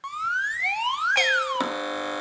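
Quiz-show electronic sound effects: a rising pitch glide for about a second, a quick falling glide, then from about one and a half seconds in a steady electronic buzzer tone as a team buzzes in to answer.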